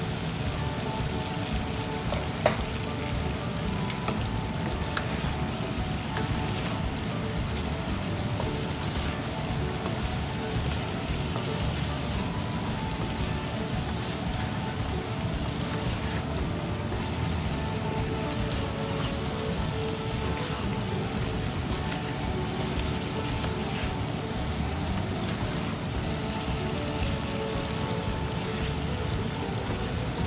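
Taro root pieces frying in a spiced onion masala in a nonstick pan: a steady sizzle, with a wooden spatula stirring and scraping through them. A single sharp knock comes about two and a half seconds in.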